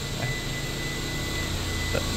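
Steady background hum with a faint, thin high-pitched whine running through it, and no sudden sounds: the constant drone of some machine or electrical device in the room.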